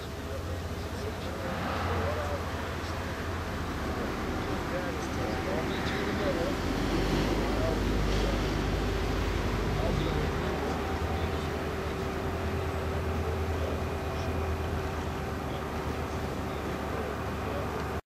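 Indistinct background voices talking on and off over a steady low hum, with a faint steady tone joining in about five seconds in.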